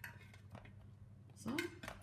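A light clink as zucchini slices are laid into an enamelled pot, followed by soft handling noise from the slices. A short spoken word comes near the end.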